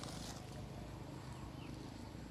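Quiet outdoor background: a steady low rumble with a faint, short bird chirp in the second half.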